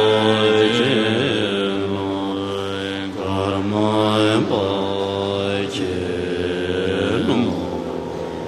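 Tibetan Buddhist monks chanting in unison in deep voices, holding long syllables that glide slowly in pitch.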